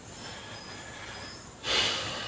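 A pause with faint, evenly spaced high insect chirps, then about one and a half seconds in a short, sharp rushing breath from the man before he speaks again.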